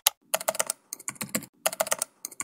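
Computer keyboard typing: quick runs of key clicks with short pauses between them.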